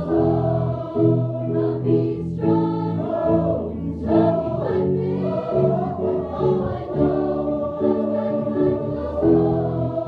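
A large choir of men's and women's voices singing an upbeat song together, with a steady beat underneath.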